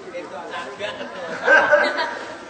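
Voices talking with background chatter, and a louder voice rising near the end.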